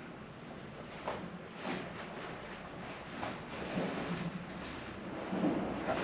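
Faint handling noise in a tank's engine compartment: scattered knocks and clunks with rustling, as someone moves about and feels around metal engine parts.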